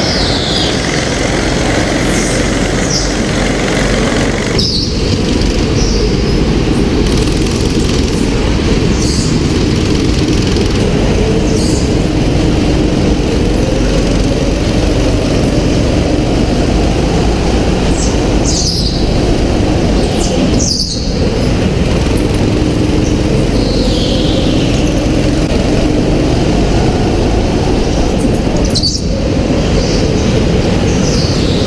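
Onboard sound of a go-kart lapping an indoor track: its engine running hard close to the microphone, with short falling tyre squeals in the corners several times.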